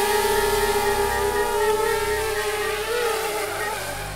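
Quadcopter drone hovering, its propellers giving a steady whine of a few tones. The pitch wavers about three seconds in as the motors adjust, and the sound grows a little fainter toward the end as the drone moves away.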